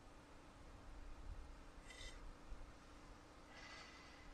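Near silence, with a faint low rumble and two brief faint high-pitched sounds, one about two seconds in and one near the end.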